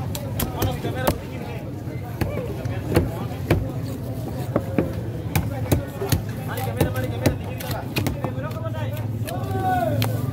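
A heavy machete-style cleaver chopping through tuna flesh and bone on a wooden chopping block: a string of sharp, irregular chops. Background chatter and a low steady hum run underneath.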